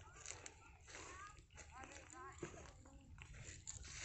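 Near silence: faint voices talking at a distance, over a low steady rumble.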